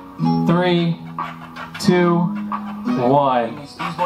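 Pop music playing, a sung vocal over plucked guitar.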